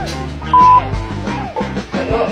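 Background rock music with guitar, cut by one short, loud, high electronic beep about half a second in.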